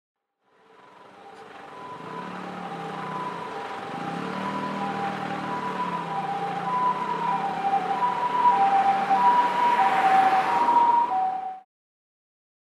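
Emergency vehicle's two-tone hi-lo siren, alternating high and low notes about once a second over a wash of traffic noise. It fades in, grows steadily louder as it approaches, and cuts off abruptly near the end.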